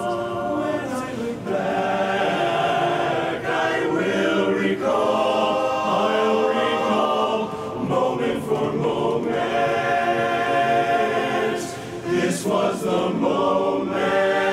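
A men's barbershop chorus singing a cappella in close harmony, many voices sustaining and moving chords together, with a short breath-like dip about twelve seconds in before the sound swells again.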